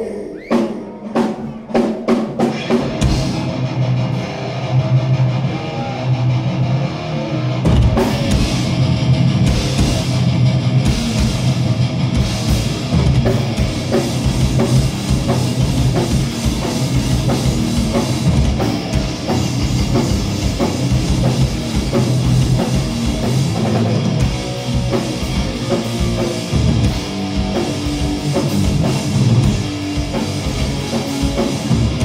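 A metal band playing live with distorted electric guitars, bass guitar and drum kit. A few separate hits open the song in the first couple of seconds. The full band comes in about three seconds in, and the drums grow denser with a fast-pulsing low end from about eight seconds.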